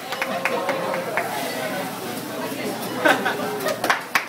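A group of voices chattering and laughing, with a few claps near the start and a louder burst of laughter near the end.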